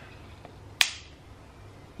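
A single sharp click about a second in as two hard-boiled, naturally dyed eggs are knocked together shell to shell, cracking one of them.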